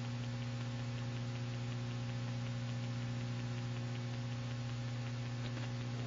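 Steady electrical mains hum in the recording, a low buzz with a stack of higher overtones over a faint hiss, heard plainly in a pause between spoken passages.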